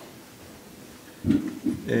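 About a second of quiet room tone, then a man's drawn-out, creaky hesitation sound, a filler 'eee', as he starts speaking again.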